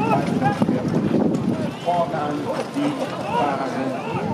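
Hooves of a four-pony driving team running on turf, a quick uneven clatter, with the rattle of the marathon carriage behind them and speech over it.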